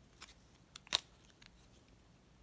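A few small clicks and taps as a white plastic AirPods charging case is handled in the fingers, the loudest about a second in.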